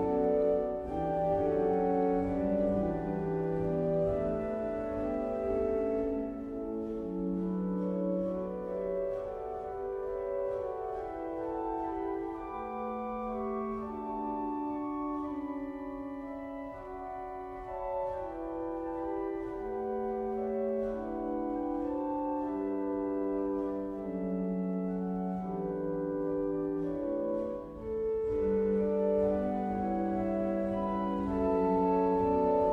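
1917 Eskil Lundén pipe organ played slowly in held, overlapping chords on its flute stops, the flûte harmonique on the first manual and the concert flute on the second, with clear, fairly pure tones.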